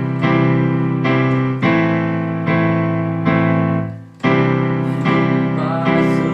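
Yamaha digital piano playing sustained chords in a repeating C major, A minor, D major pattern, a new chord struck about every second. The sound dies away briefly just before the four-second mark, then the pattern resumes.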